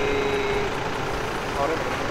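Steady rumble of a motor vehicle engine running, with faint voices in the background.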